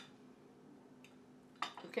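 Quiet kitchen with a faint steady hum, then a few light clinks of a serving utensil against dishes near the end as food is served onto a plate.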